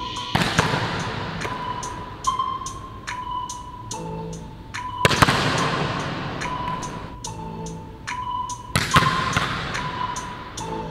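A volleyball slapped hard three times, roughly four seconds apart, each hit echoing for a couple of seconds around a large gym hall. Background music with a steady beat runs underneath.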